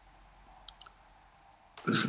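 Near silence with two or three faint short clicks a little under a second in. A man's voice starts speaking near the end.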